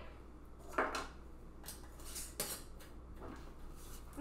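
Metal screw bands being twisted onto glass mason jars over flat canning lids, fingertip tight: a few light, separate clinks and scrapes of metal on glass.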